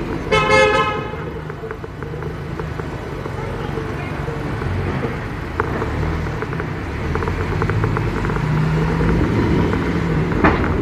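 A car horn toots once, briefly, a fraction of a second in. After it comes the steady low rumble of engine and slow city traffic.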